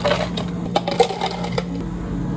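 Ice cubes scooped with a metal scoop and dropped into large plastic cups, clattering and clinking in a quick run at first and then in a few separate knocks. A steady low hum lies underneath.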